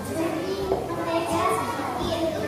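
A young girl speaking into a handheld microphone, with a child's voice throughout.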